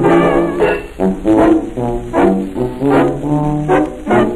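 A 1925 jazz orchestra record playing a blues, with the brass to the fore in a full, rhythmic ensemble passage. Some held notes carry a wavering vibrato.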